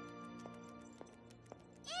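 Quiet background music of held, sustained tones, slowly fading down, with faint short clicks about every half second.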